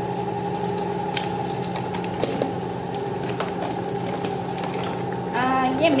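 Two eggs frying in oil on a flat pan: a steady sizzle with a few sharp pops scattered through it, over a steady low hum.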